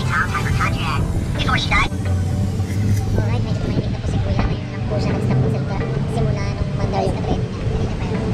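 Running noise of a moving Conch Tour Train heard from an open passenger car: a steady low engine hum and road rumble, with people's voices over it at the start and again near the end.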